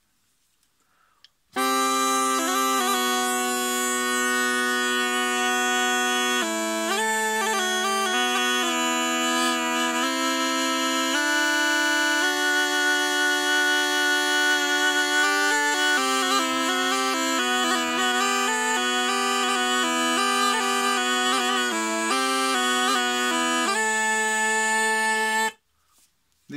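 A Dorian aulos, a double-pipe reed instrument, played through its curved reeds, with both pipes sounding together. The lower pipe holds long notes while the higher pipe moves through a melody. The playing starts about a second and a half in and stops suddenly shortly before the end.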